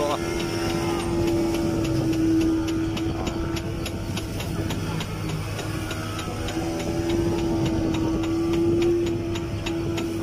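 Fishing boat's engine running at a steady drone with a regular light ticking, over the rush of water along the hull.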